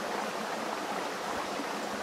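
A shallow stream flowing, a steady even rush of water.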